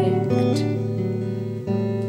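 Steel-string acoustic guitar played alone in a slow song, its chord ringing on, then struck again near the end.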